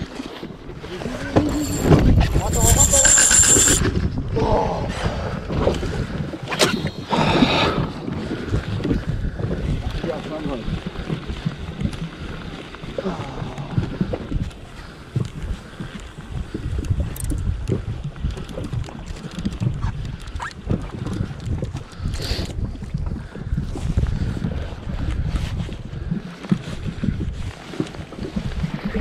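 Wind buffeting the microphone at sea, a rumbling low noise that rises and falls, with a few muffled voices during the first eight seconds.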